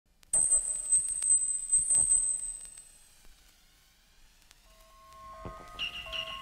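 Opening of an experimental electronic track. A high, wavering electronic whine with a few sharp clicks fades away over the first three seconds. After a quiet gap, pitched synthesizer tones come in and build into a repeating pulsing pattern near the end.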